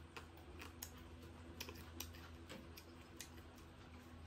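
Faint eating sounds from a person eating rice by hand: a scattering of soft clicks and smacks from the mouth and fingers, about two or three a second, over a low steady hum.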